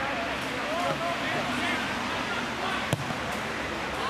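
Footballers calling out to each other, with a single sharp thud of a football being kicked about three seconds in.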